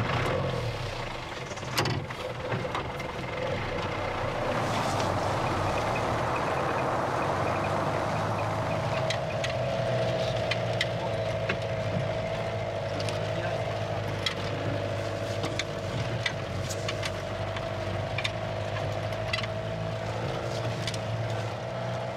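Vehicle engine running steadily as it drives a rough, snowy mountain track, with scattered knocks and rattles from the bumpy ride. A steady whine comes in about nine seconds in and holds.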